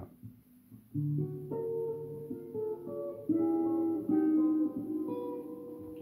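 Electric guitar run through a guitar-modelling processor set to a profile of a Duesenberg guitar, picking a slow line of single notes that are left to ring into each other, starting about a second in.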